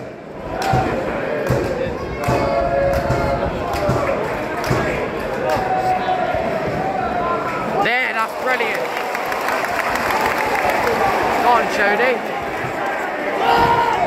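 Football crowd noise in a stadium stand: nearby fans shouting and chanting over the steady noise of the crowd, with a few sharp knocks.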